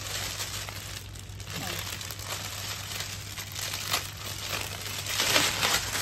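Clear plastic packaging crinkling and rustling as it is pulled open to unwrap a shawl, loudest about five seconds in.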